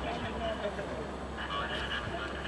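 Indistinct talking of people standing around on a city street, over a steady low hum of street noise.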